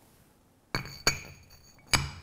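Metal clinks as a truck transmission input shaft bearing retainer is set down over the input shaft onto its bearing. There are three sharp clinks, each ringing briefly; the first comes about three-quarters of a second in.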